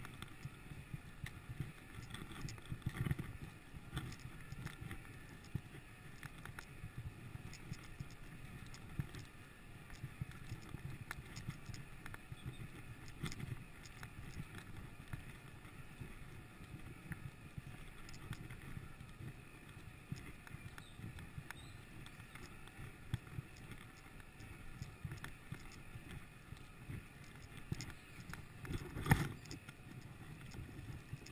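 Mountain bike rolling along a dirt forest trail: steady tyre noise with a low rumble and many small rattles and knocks as the bike goes over bumps. A louder jolt comes near the end.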